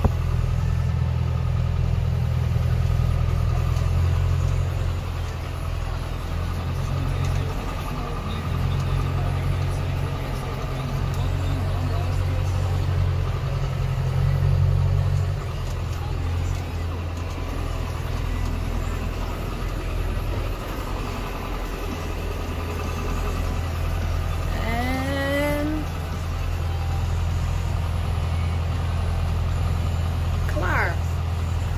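Tractor engine running steadily under load, a low drone heard from inside the cab, rising and falling a little in level.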